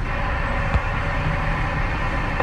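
Steady low rumble and hiss of a vehicle's cab, with a brief low thump a little under a second in.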